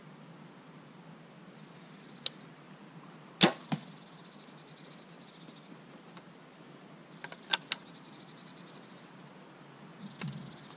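Compound bow shot: a loud, sharp crack as the string drives the arrow off, followed about a third of a second later by a weaker knock of the arrow striking the target. A faint click comes just over a second before the shot, and a few light clicks come later as the bow is handled.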